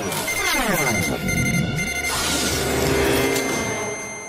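Cartoon electronic sound effect over dramatic background music: several tones slide down in pitch over about a second, with short repeated high beeps, like a robot powering down.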